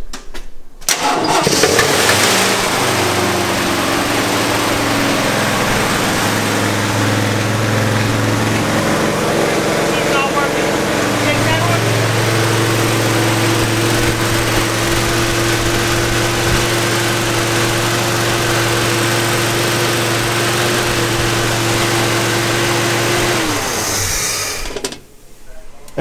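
Freshly rebuilt AMC 390 V8 firing on its first start and catching about a second in, then running loud and steady, with only exhaust and fan noise and no knocking or ticking. Its ignition timing is not yet set and the carburetor is unadjusted. Near the end the engine dies with a falling pitch as the coil lead is pulled, because the key would not shut it off.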